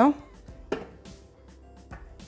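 Soft background music, with a single light knock about three-quarters of a second in and another faint tap near the end.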